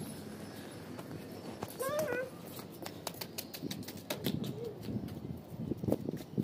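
A short voice-like call about two seconds in, then a run of quick clicks with low murmuring voices through the second half.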